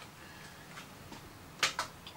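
Quiet room tone, then two quick clicks close together about one and a half seconds in as the plastic embossing folder is picked up off the craft mat.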